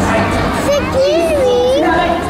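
A child's voice calling out in one long note that dips and rises again, about a second long, over the chatter of an audience.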